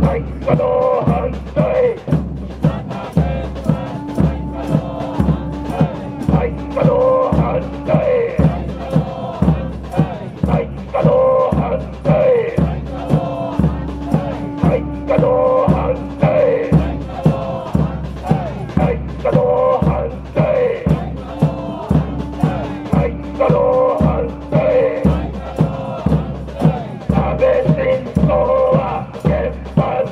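Protesters chanting short slogans in rhythm, led through a microphone and loudspeaker, over a large drum beaten steadily about twice a second.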